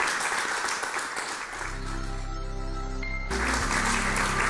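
Studio audience applauding, fading about a second and a half in under a sustained chord of a TV show's bumper jingle. The applause comes back over the music near the end.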